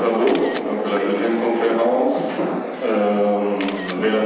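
Two camera shutter clicks about three seconds apart, each a quick double click, over a man's voice speaking into a microphone.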